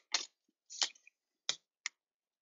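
A freshly opened trading-card pack being handled: four short crinkles and clicks of the paper wrapper and card stock, each brief and separate.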